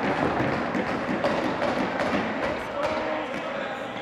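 Indistinct chatter and calls of ball hockey players echoing in a gymnasium, with occasional sharp knocks of sticks and ball on the wooden floor.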